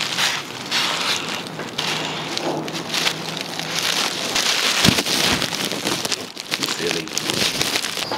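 A dog tugging and chewing bubble wrap in a cardboard box: steady crinkling and crackling of the plastic, with a single knock about five seconds in.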